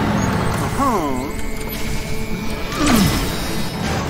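Animated cartoon soundtrack: a busy background of music and effects, with wavering tones that slide up and down about a second in and again near three seconds.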